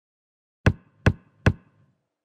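Three sharp percussive hits, evenly spaced less than half a second apart, a sound-effect sting for an animated logo end card.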